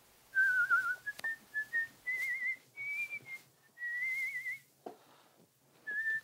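A person whistling a slow tune: clear single notes in short phrases, held notes wavering with vibrato, the pitch stepping up toward the middle, with a pause about a second long near the end.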